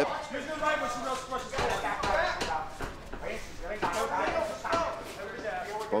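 Voices from the crowd and corners around the cage calling out and shouting during the bout.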